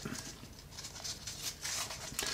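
Faint rustling and crinkling of a damp cleaning wipe being unfolded by hand, a little busier in the second half.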